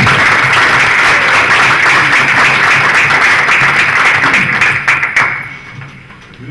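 Audience applauding, dying away about five seconds in.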